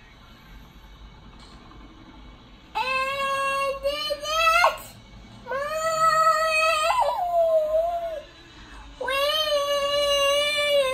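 A young child singing three long phrases of held notes, starting about three seconds in, with short pauses between them and a wavering note near the end.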